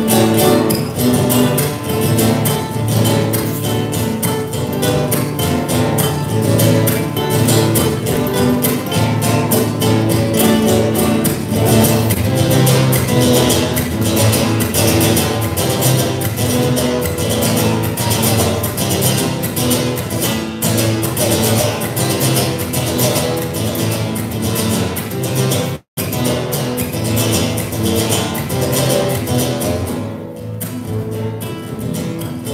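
Malambo music: acoustic guitar strummed in a fast, driving rhythm with rapid percussive beats throughout. The sound cuts out for an instant about four seconds before the end.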